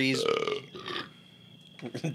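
A man burps loudly, a rough burp of about half a second, followed by a short laugh.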